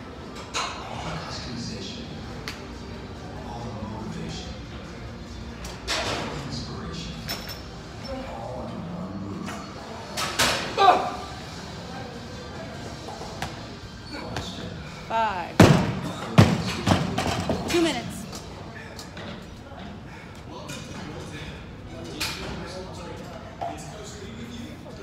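A loaded barbell with bumper plates dropped onto the gym floor after a lift: two heavy thuds less than a second apart, about two-thirds of the way in. A voice shouts or grunts about ten seconds in and again just before the drop, over background music.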